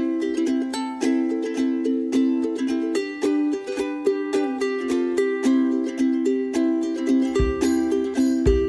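Background music: a light, bouncy tune of quickly plucked string notes, with deep bass notes coming in near the end.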